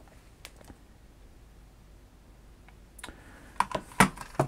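Light clicks and knocks of a plastic multiway extension adaptor and its flex being handled and moved on a mat: a few faint ones about half a second in, then a cluster near the end.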